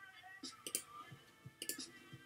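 Computer mouse clicks, a few sharp clicks in small quick clusters, as a checkbox is ticked and a button is pressed.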